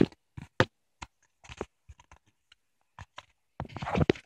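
Cardboard box and a paper pamphlet being handled: scattered small scrapes and taps, with a denser paper rustle near the end.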